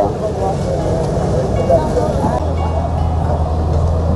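Several people talking in the background at a construction site, overlapping chatter. A steady low hum, such as a running engine, sets in a little past halfway.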